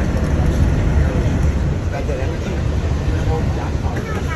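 Walt Disney World monorail in motion, heard from inside the car: a steady low rumble with an even running noise above it.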